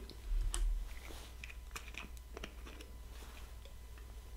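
Plastic water bottle being handled and opened: faint scattered clicks and crinkles of plastic, with a low thump about half a second in.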